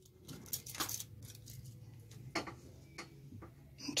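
A few faint, scattered clicks and light metal clinks from a crane-game claw assembly being handled, over a low steady hum.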